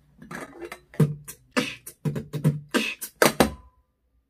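Human beatboxing: a rhythmic run of mouth-made kick thumps and sharp clicks, about three a second, imitating tapping on a stainless steel pot and its glass lid. A brief ringing tone comes near the end.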